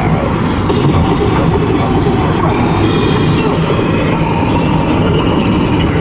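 Steady rumble of tyre and wind noise from a moving car crossing a bridge, heard loud and even throughout.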